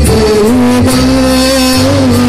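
Live performance of a Bengali song for male voice with violin accompaniment: a long note is held steady through a microphone, wavering slightly near the end.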